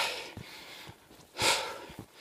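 A man's heavy breathing from exertion while hiking uphill with a backpack: one audible breath about one and a half seconds in.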